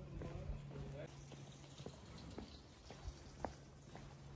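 Footsteps on a paved lane, about two steps a second, clearest in the second half. Faint voices can be heard in about the first second.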